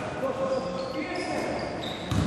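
A basketball being dribbled on a hardwood court, echoing in a large gym, with players' voices and calls around it.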